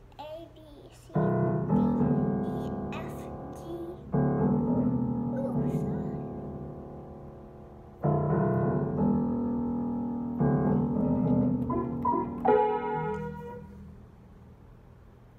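A child playing an upright piano: full chords struck every few seconds and left to ring and fade, with a few single notes between and a brighter, higher cluster of notes near the end. A child's voice is heard briefly just before the first chord.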